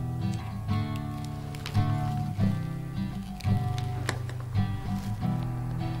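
Background music: a run of sustained pitched notes changing about every half second.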